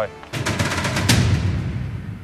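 Edited transition sound effect: a rapid rattling burst of sharp clicks, then a heavy low rumbling hit that fades away toward the end.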